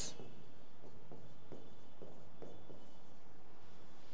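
Pen writing on an interactive touchscreen board: a few faint taps and short strokes of the pen tip on the screen.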